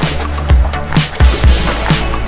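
Background music with a steady beat: deep bass drum hits and sharp snare-like strokes over a sustained bass line.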